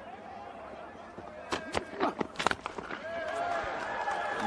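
A handful of sharp knocks about halfway through, among them a cricket bat striking the ball, over a low hum of crowd noise and faint distant voices.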